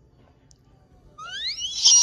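A shrill, high-pitched squeal: it starts about a second in, rises steeply in pitch, then holds one steady piercing tone, the loudest thing here.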